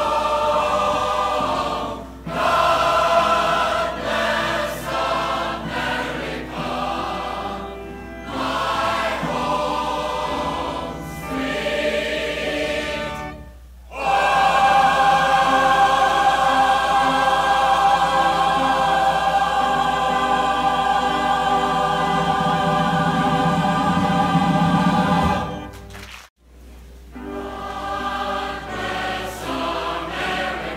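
Live recording of a large community choir singing in phrases. About halfway through, a long chord is held for some ten seconds. It cuts off suddenly with a moment's dropout before the singing picks up again.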